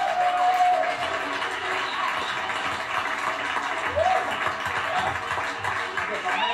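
Studio audience applauding and cheering with music playing, just after a contestant's answer matched; heard through a television's speaker.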